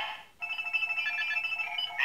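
Kamen Rider Zi-O DX Ex-Aid Ridewatch toy playing its electronic sound effects through its small built-in speaker. An electronic sound fades out, and after a short gap comes a jingle of steady beeping tones. The toy's voice calling "Ex-Aid" begins right at the end.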